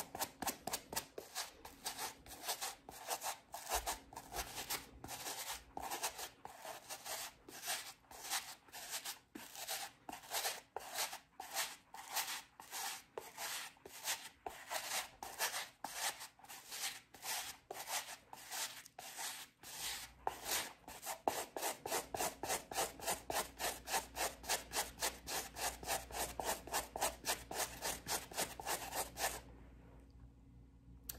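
Suede brush scrubbing a suede shoe wet with cleaning solution, in quick, even back-and-forth strokes at about three a second. The strokes stop just before the end.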